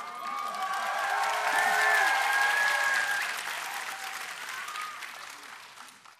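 Studio audience applauding and cheering as a performer walks on stage, with voices shouting over the clapping. It swells over the first two seconds, then fades away toward the end.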